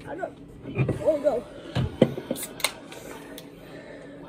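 Mostly a boy's voice saying "no", followed by a few sharp clicks and knocks, the loudest about two seconds in.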